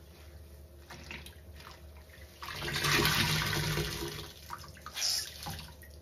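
Soaked sponge squeezed by hand in a basin of sudsy rinse water. Soft squishes come first, then a loud rush of water streams out for about two seconds from midway, and a short splash follows near the end.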